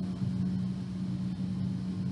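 A steady low hum with faint hiss, no voice: the recording's constant background noise.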